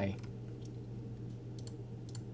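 A few faint computer mouse clicks, spaced out, as an item is picked from an on-screen drop-down menu.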